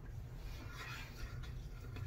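Faint rubbing and light patting of hands spreading aftershave balm over the face and beard, over a low steady room hum.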